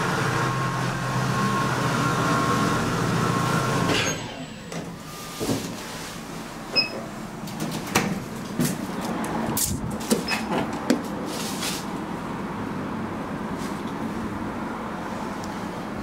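Platform lift's drive running with a steady hum and whine while the platform travels, cutting off about four seconds in as it stops. Scattered clicks and knocks follow.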